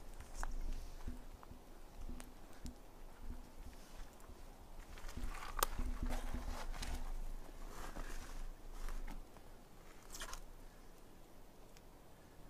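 Footsteps on the forest floor, uneven and soft, with a sharper crack about halfway through and another near the end.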